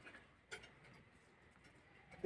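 Near silence, with two faint clicks early on and nothing else.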